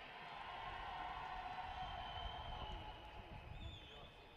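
Small stadium crowd cheering and clapping after an athlete's introduction, dying down near the end.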